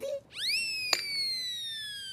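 Comic sound-effect sting: a whistle-like tone that swoops up quickly, then glides slowly downward, with a sharp click about a second in.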